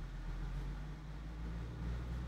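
A low steady hum with a faint even hiss underneath, and no distinct sounds on top.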